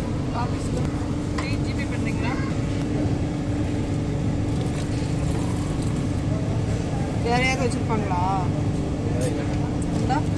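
Steady low rumble with a constant hum, typical of machinery running, with faint voices about seven seconds in.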